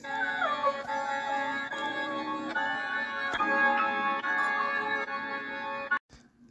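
A flipped melodic sample loop playing back from FL Studio: the original loop reversed, put at half time and pitched up 12 cents, heard without drums. It sounds as sustained, organ-like chords with a few short melodic steps and almost no bass, cutting off suddenly at the end.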